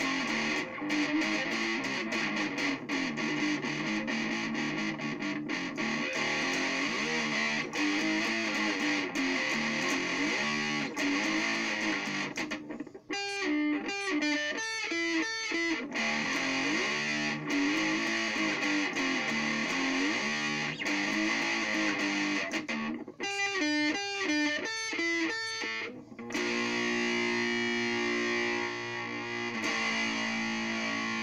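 Stratocaster-style electric guitar in drop D tuning, played through distortion: continuous riffing, with two stretches of short, choppy picked notes about a third and three-quarters of the way through, and a chord left ringing near the end.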